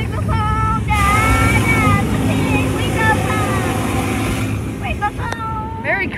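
Car-wash water spray hitting the car's windows, heard from inside the car over a steady low rumble of the wash equipment. The spray is loudest from about a second in until past the middle. High-pitched squeals come and go throughout.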